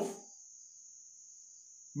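A faint, steady, high-pitched insect trill fills a pause in a man's speech. His voice trails off at the start and comes back at the very end.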